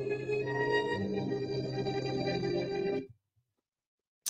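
Anthony Rizzo's baseball walk-up music, a recorded song played back over the stream, cutting off suddenly about three seconds in.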